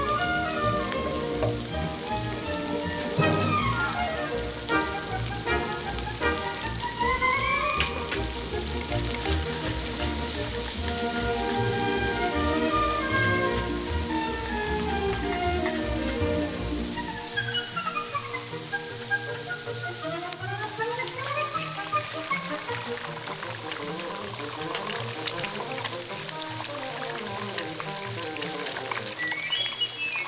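Instrumental background music with sweeping melodic lines, its bass dropping out about two-thirds of the way through, over the sizzle of pad thai noodles being stir-fried in a hot wok with a metal spatula.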